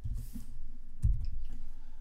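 Computer keyboard keystrokes: a few separate key clicks with dull thuds as characters are typed.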